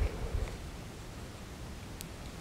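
Quiet room tone with a faint rustle and a couple of soft low bumps in the first half-second, from a person moving on a yoga mat as she rises out of a forward bend.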